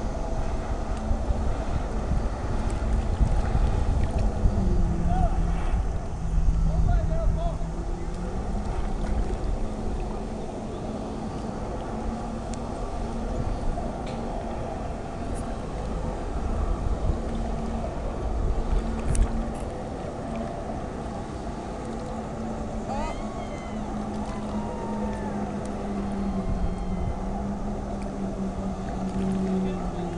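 Distant jet ski engine powering a flyboard, a steady drone that drops in pitch about five seconds in, rises again near the nine-second mark, and drops once more in the last few seconds as the throttle changes. Low wind rumble on the microphone, heaviest in the first third.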